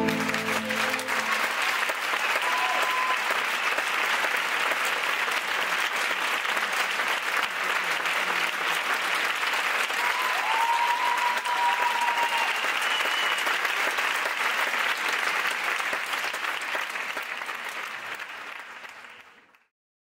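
Audience applauding steadily at the close of a dance performance, with a few short high calls above the clapping. The last notes of the music die away in the first second, and the applause fades out just before the end.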